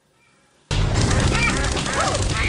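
A flock of birds bursting into flight in a film soundtrack, starting suddenly about two-thirds of a second in: wings flapping and birds calling.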